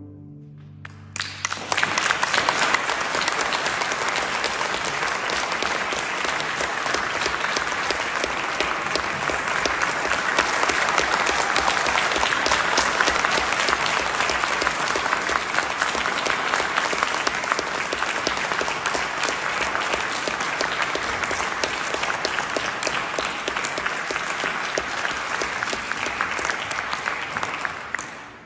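The last chord of a string orchestra dies away, and about a second and a half in the audience breaks into sustained applause.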